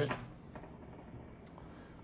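Quiet room tone in a small room, with one faint click about a second and a half in.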